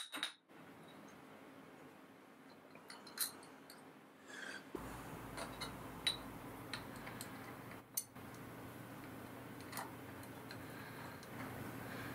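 Faint, scattered small metal clicks and clinks of hand handling: a screw is fitted into a tapped hole in an aluminium plate held in a vise, and a steel rule or square is set against it. A faint steady low hum comes in about five seconds in.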